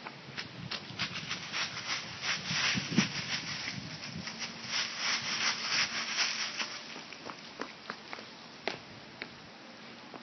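Dry fallen leaves crunching and crackling under a toddler's feet as he walks through them. The crackles come in a dense, irregular run and thin out to a few scattered ones in the last few seconds.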